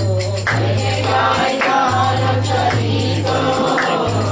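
Kirtan: a group of voices singing a devotional chant together over jingling hand percussion, with a steady low drone underneath that drops out now and then.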